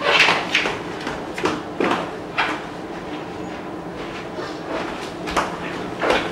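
Scattered light clicks and knocks of objects being handled out of sight, several in the first couple of seconds and one more near the end, over quiet room tone.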